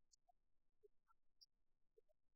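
Near silence: only a faint background floor with a few tiny scattered blips.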